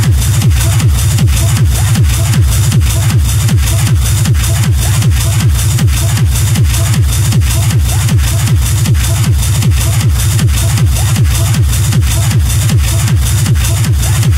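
Techno track playing in a DJ mix: a steady kick drum a little over two beats a second over heavy bass, with no break.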